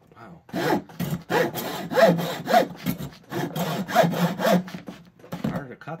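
Hand hacksaw cutting through a wooden Lincoln Log toy log, in steady back-and-forth strokes about two a second.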